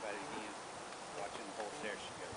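Buzzing of a flying insect, wavering up and down in pitch.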